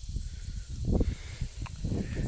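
Outdoor rustling with wind buffeting the microphone, and a louder rustle about a second in as the plants and grass are brushed.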